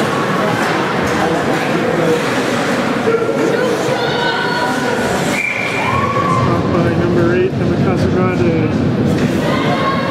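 Many voices of players and spectators calling out and chattering in an echoing ice rink, with a brief high steady tone about halfway through.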